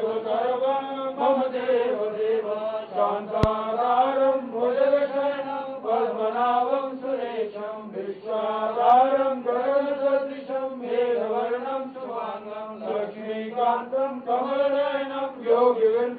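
Sanskrit mantras chanted in a steady, melodic voice as part of a Hindu aarti, the recitation flowing on without a break. A single sharp click sounds about three and a half seconds in.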